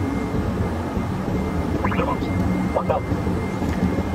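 Steady cockpit noise of a Hawker 800XPi twin-turbofan business jet on approach: a constant rumble of engines and airflow with a faint steady high tone. Short fragments of a voice come through about two and three seconds in.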